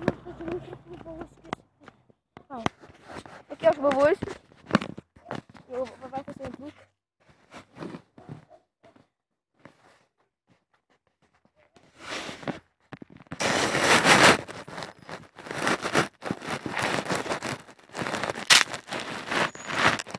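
High-pitched young voices calling out over the first several seconds. After a quiet spell, loud crackling bursts of noise with sharp clicks begin about twelve seconds in and run on to the end.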